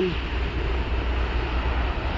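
Steady street traffic noise, an even rush from cars passing on a busy road.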